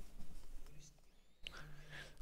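Quiet pause between a man's spoken phrases: faint breath and mouth sounds, a short click about one and a half seconds in, and a soft low hum of his voice near the end.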